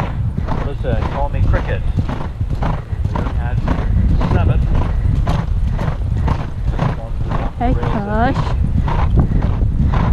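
A horse galloping on turf, its hoofbeats striking in a steady stride rhythm, with heavy wind rumble on the helmet camera's microphone.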